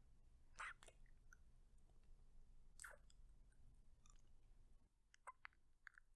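Faint close-microphone ASMR kissing sounds: a handful of short, wet lip smacks and mouth clicks, spaced out, with the clearest about half a second and three seconds in and a quick few near the end.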